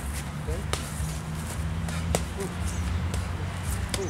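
Boxing gloves striking leather focus mitts: three sharp slaps, about a second in, about two seconds in and near the end, over a steady low rumble.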